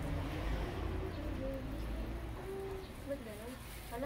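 Faint voices in the background, with short low pitched sounds that rise and fall, over a low steady rumble.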